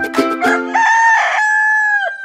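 The last beats of an upbeat intro jingle, then a rooster crowing once: a single long call held on one pitch that sags as it fades.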